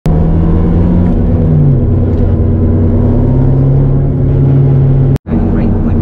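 A car engine and exhaust running at a steady pitch, dropping to a lower steady pitch about a second and a half in. The sound cuts off abruptly for a moment near the end, then carries on.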